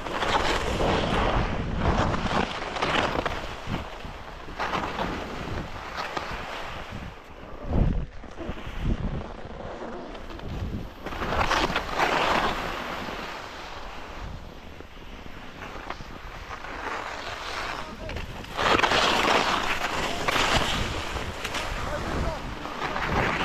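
Skis scraping over hard, wind-packed snow in bursts, loudest at the start, about halfway through and near the end, with wind noise on the microphone throughout. A brief low thump comes about eight seconds in.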